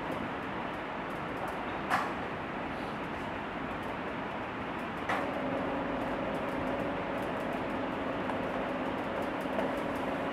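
Electric motor of a roll-up projection screen starting about halfway through and humming steadily as the screen retracts, over steady room noise. A single click about two seconds in.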